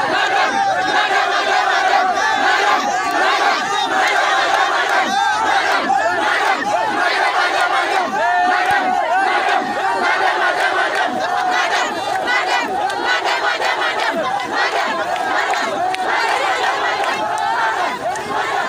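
A large crowd shouting and yelling together, many voices overlapping at a steady loud level, in angry protest.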